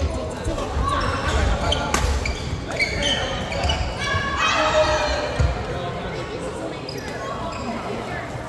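Badminton rally in an echoing sports hall: sharp racket strikes on the shuttlecock and thudding footsteps on the wooden court, with players' voices in the hall.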